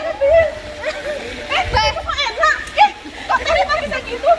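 Several women's voices talking and calling out over one another, with water splashing in a swimming pool in the background.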